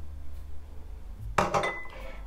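Kitchenware being handled around a small glass bowl and a stainless steel saucepan: one sharp clink about one and a half seconds in, with a short ring after it.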